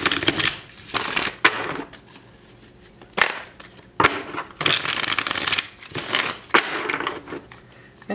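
A deck of tarot cards being shuffled by hand: about six bursts of card rustle with short pauses between them, a few sharp clicks among them, and a longer lull a couple of seconds in.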